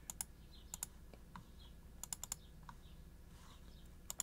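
Faint clicking of computer keys: a pair of clicks at the start, another pair just under a second in, and a quick run of four about two seconds in, over a low steady hum.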